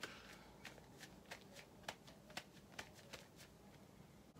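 Faint rustling and light crackling of a paper napkin pressed against the face.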